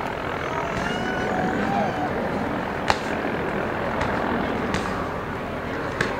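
Steady outdoor crowd noise with faint distant voices, and one sharp smack about three seconds in: a strike landing on a held striking pad during a knee-and-elbow demonstration.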